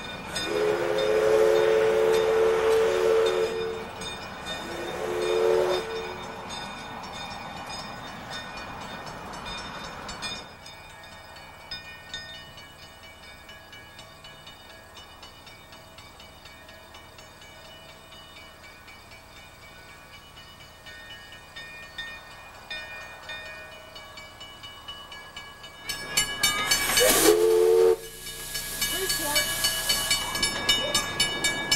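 Narrow-gauge steam locomotive's whistle: one long blast of about three seconds, then a short blast. Near the end a loud burst of steam hiss comes with another short whistle blast.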